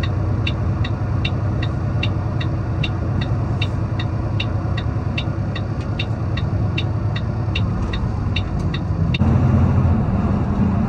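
Heavy truck's diesel engine running with road rumble inside the cab, over a steady ticking of the turn-signal flasher, nearly three ticks a second. The ticking stops about nine seconds in and the engine gets louder, its note rising.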